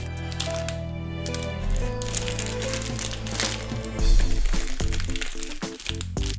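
Background music with a steady beat, over the crinkling of plastic packaging bags being handled.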